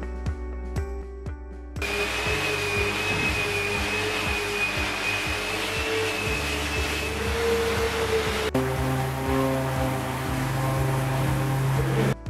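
Under background music, an electric angle grinder with a sanding disc starts about two seconds in, grinding and smoothing the edge of a wood-and-epoxy tabletop with a steady high whine. About two-thirds of the way through the sound changes suddenly to a steadier, lower-humming run of electric orbital sanders on the tabletop.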